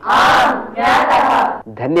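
A class of female students answering together in chorus: two loud unison replies, each under a second long, one right after the other.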